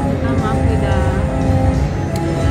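Video slot machine playing its free-spins bonus-round music and game sound effects, over casino background noise and voices.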